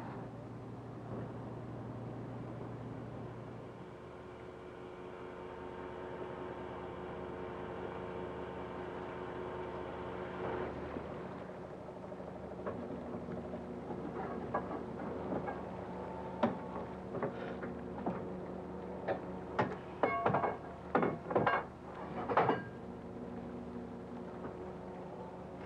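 A fishing boat's engine running steadily with a hum of several steady tones. In the second half, a run of sharp knocks and clanks from the gear as the trawl net is hauled in over the side.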